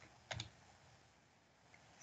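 A few quick computer keyboard keystrokes about a third of a second in, otherwise near silence.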